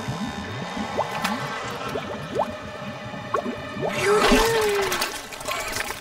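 Cartoon green-slime sound effects over background music: a run of quick rising bloops like bubbling goo, then a louder splatter about four seconds in as blobs of slime fly.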